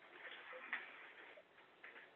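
Quiet room tone with a few faint, light clicks, the sharpest about three-quarters of a second in.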